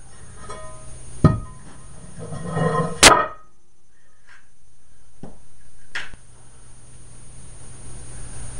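Cast iron barbell plate handled and set down on a concrete floor, with a metallic knock, a sharp loud clank about three seconds in, and smaller metal clicks afterwards as the electromagnet is set on the plate.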